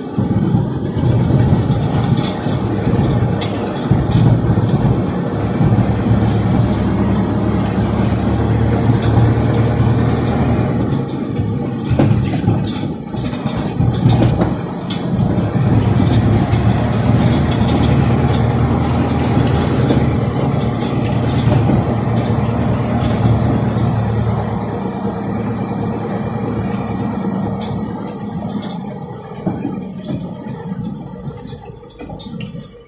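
Tatra T148 truck's air-cooled V8 diesel engine running steadily under way, heard from inside the cab, with scattered knocks and rattles over the rough track. The engine falls quieter near the end.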